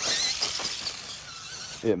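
Twin 37-turn 380-size brushed electric motors and gears of a Danchee RidgeRock RC rock crawler whining as it drives, with a gritty scraping of its tires on rock and grit, loudest at first and fading.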